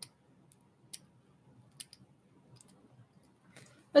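A few faint, sharp clicks, about a second apart, from a small plastic model-kit part being worked with a hand tool.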